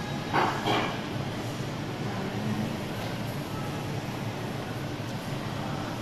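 Steady background hum and murmur of a shopping mall's open atrium, with a brief voice sound about half a second in.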